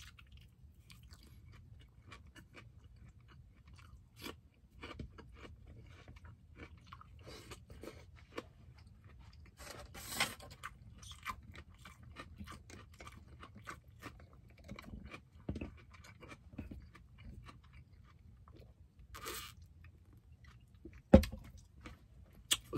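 Close-up mouth sounds of a person chewing barbecued skewer meat: soft, wet clicks and smacks that keep going, with a few louder bites and crunches along the way. A single thump comes near the end.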